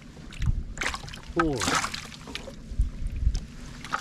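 Water splashing and dripping as handfuls of live golden shiners are lifted from a boat's well and dropped into a bucket of water, with wind buffeting the microphone.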